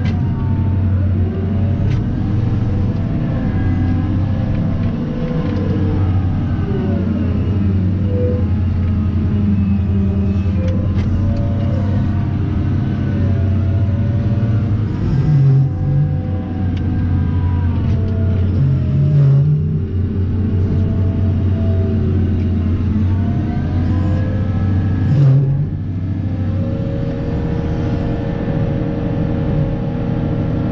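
Cat 994 wheel loader's V16 diesel engine running steadily under load, heard from inside the cab, its whine rising and falling in pitch several times as the machine works. Three short, louder low thuds come through about halfway and near the end.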